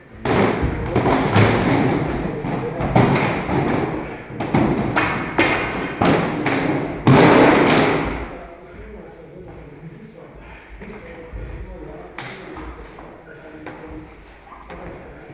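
Rapid, irregular thuds and knocks of a rubber-headed spear and a sparring axe striking heavy plywood shields, loud and dense for about the first eight seconds, then dying down to occasional light knocks.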